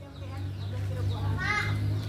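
A faint child's voice calls out once about one and a half seconds in, over a low steady hum.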